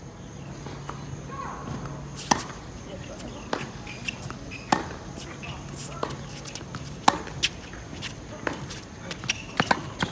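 Tennis rally on a hard court: a ball struck by rackets and bouncing on the court, heard as sharp pops every second or two, with a quick cluster of them near the end.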